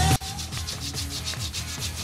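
Sandpaper rubbed back and forth by hand on a small wooden derby-car block, a quick, even run of short scratchy strokes.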